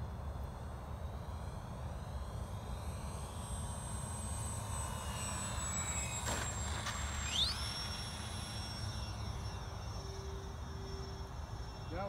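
Radio-controlled model OV-10 Bronco flying a low pass: its twin motors and propellers whine, falling in pitch as it goes by, then rising sharply a little after the midpoint as it is throttled up to climb away. A steady low rumble sits underneath.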